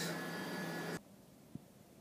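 Steady room hiss in a small room that cuts off suddenly about halfway through, leaving near silence with one faint low thump.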